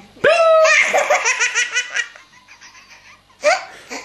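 A baby laughing hard: a high squeal just after the start, then a quick run of laughs that fades, and another short burst of laughter near the end.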